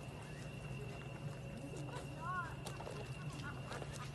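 Faint outdoor night ambience: a steady low hum under a steady thin high tone, with faint distant voices about two seconds in and a few light clicks.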